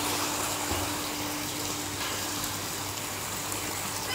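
Water jets from a pool fountain pouring steadily into a swimming pool, a continuous gushing, with a steady low hum underneath.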